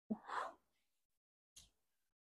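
A woman's short breathy exhale, like a sigh, lasting about half a second, from the effort of a set of side-lying leg lifts, followed near the end by a brief faint sniff.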